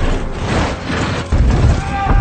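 Film sound effects from a giant-monster battle: a dense low rumble, with a heavy booming hit about a second and a half in.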